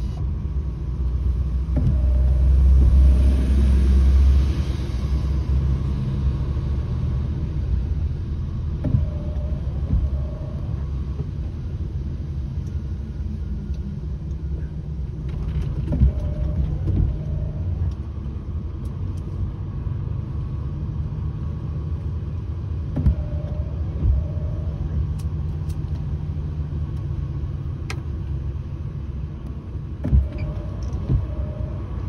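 Steady low rumble of a moving vehicle's engine and tyres, heard from inside the cabin while driving. It swells louder a few seconds in, and a few brief knocks from bumps break it later on.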